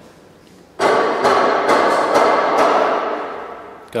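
A sudden loud metallic clang about a second in, which rings on with several tones and slowly fades out over about three seconds.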